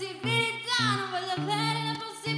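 A woman singing live over her own electric guitar chords; her voice slides down in pitch about a second in.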